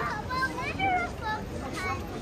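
Young children's high-pitched voices calling out, their pitch rising and falling, over a steady low outdoor rumble and background crowd noise.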